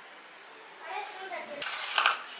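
Faint voices in the room, then a metal spoon clinking against a stainless-steel container near the end as sweet pongal is served into it.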